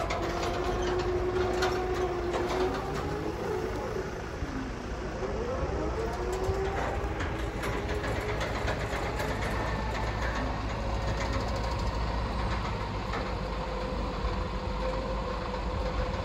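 JLG 10RS electric scissor lift driving, its electric drive motor whining and rising in pitch as it picks up speed, then holding a steady whine. Scattered clicks run through it.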